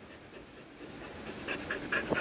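A dog panting close up: faint at first, then short, quick breaths in the second half.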